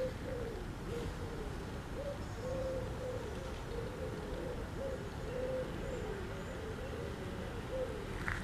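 A bird giving low, wavering calls, repeated almost without a break, over a steady low rumble.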